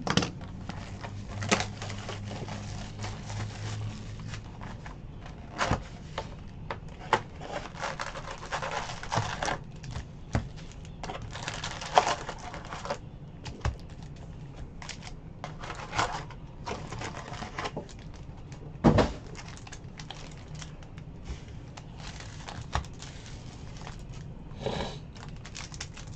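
Baseball trading cards and foil packs being handled on a table: irregular taps, clicks and papery rustles, with one sharper knock about two-thirds of the way through.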